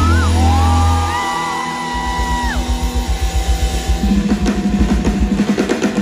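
Live pop-rock band playing through a large PA, heard from the audience: drums, guitar and bass, with long held high notes over the band early on and a steady drum beat driving the second half.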